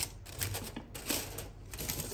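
Aluminium foil crinkling and crackling in irregular bursts as it is peeled back from a pot sealed for dum cooking.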